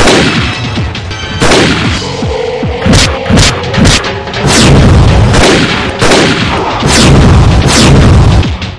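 Rifle gunshots, about ten shots at uneven intervals, some in quick succession, each with a deep booming echo.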